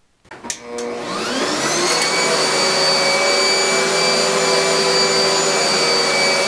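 Upright vacuum cleaner switched on with a click, its 12-amp motor whining up to speed over about two seconds and then running steadily, powered through a 2000-watt DC to AC inverter.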